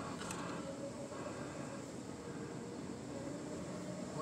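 Quiet, steady low rumble of a car rolling slowly, heard from inside the cabin.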